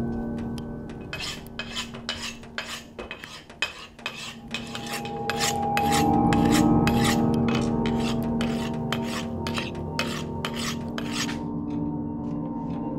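A steel knife blade drawn again and again along a honing steel, quick scraping strokes about two to three a second that stop suddenly near the end. A low sustained drone runs underneath.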